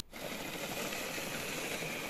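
Band saw running and cutting a curve through a teak board: a steady, even machine noise that comes in abruptly and holds without a break.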